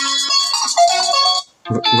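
Ringtone previews playing through a Blackview BV7100 smartphone's loudspeaker as tunes are picked from the ringtone list. One melody cuts off about a second and a half in, and after a brief gap a different, lower-pitched tune starts.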